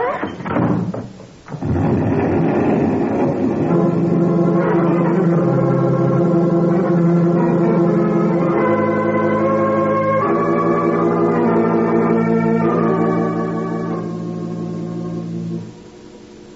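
Organ music bridge: slow sustained chords that change every few seconds, coming in about two seconds in and fading away just before the end.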